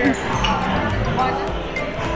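Busy restaurant ambience: background music with a regular low thump about twice a second, under voices in the room.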